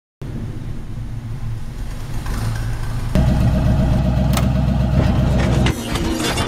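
Engine sound effect: a steady low vehicle engine rumble that starts abruptly and grows louder about three seconds in, with a couple of sharp clicks.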